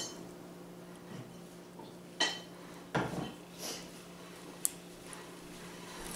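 Faint metal clicks and scrapes of steel bent-nose pliers and a spring-steel retention ring against the steel head of a ratcheting breaker bar adapter, as the ring is compressed and worked into its groove: a few separate sharp clicks about a second apart over a quiet background.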